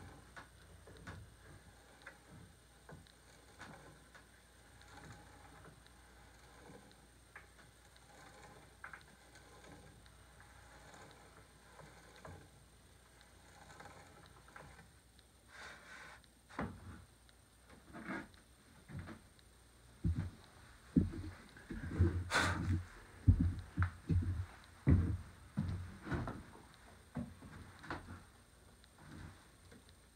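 Faint regular ticking, then from about two-thirds of the way in a run of irregular knocks and clunks with one sharp click among them: handling at the bench around a long drill bit in a longrifle stock's ramrod hole, with no drill motor heard.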